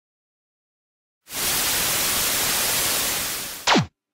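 Static-hiss sound effect: a loud burst of even hiss starts about a second in and lasts over two seconds, fading slightly. It ends with a quick tone sweeping from high to low and a sudden cut-off, like a screen switching off.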